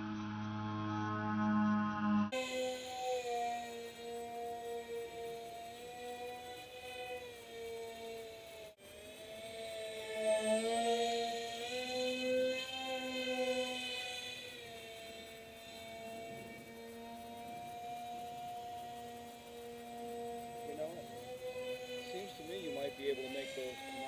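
Droning of a radio-controlled model jet's twin electric motors and propellers, slowed down so it comes out as a low hum of several tones that slowly waver in pitch. The sound changes abruptly about two seconds in and drops out for an instant near nine seconds.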